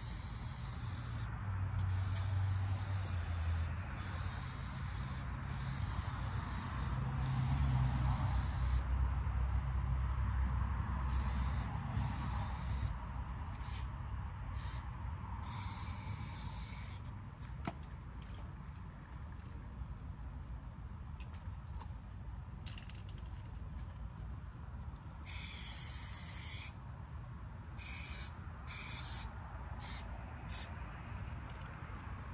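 Aerosol spray paint can hissing in repeated bursts of one to two seconds with short gaps between, as paint is sprayed onto a car's body panels. The bursts thin out after about 17 seconds, with a few short sprays near the end. Under it runs a low hum whose pitch steps every few seconds.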